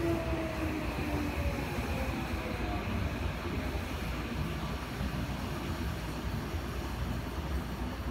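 Chiyoda Line subway train running, heard from inside the car: a steady low rumble of wheels on track, with a motor whine that falls in pitch over the first few seconds.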